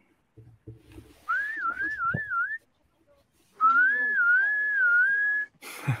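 A person whistling two short wavering phrases. The second is longer and steadier than the first, and a noisy burst follows near the end.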